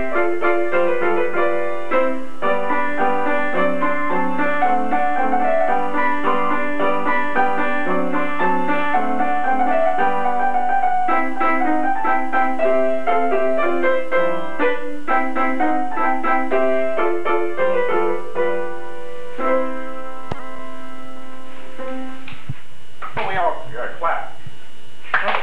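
Upright piano played at a brisk pace with many short notes, ending about twenty seconds in on a held chord that rings out. Voices follow near the end.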